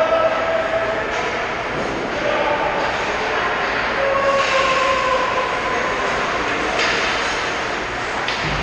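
Echoing ice-rink ambience during a hockey game: a steady wash of noise with hockey skates scraping and carving the ice, swelling about four and a half and seven seconds in, and faint distant shouts.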